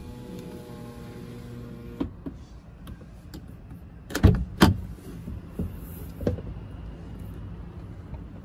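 2022 Toyota Corolla Cross driver's power window motor running in one-touch auto mode: a steady hum for about two seconds that stops with a click as the glass reaches the end of its travel. A little after four seconds, two loud clunks as the inner door handle is pulled and the driver's door unlatches and opens.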